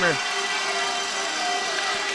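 Steady crowd noise from a packed gymnasium's stands between rallies, an even wash of many voices and movement.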